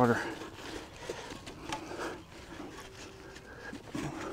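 Soapy sponge scrubbing a bicycle wheel's cassette and spokes: faint wet rubbing with scattered small clicks.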